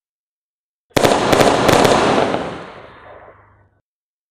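An aerial firework shell bursting about a second in: a sudden bang with a few quick cracks, then dying away over about two and a half seconds.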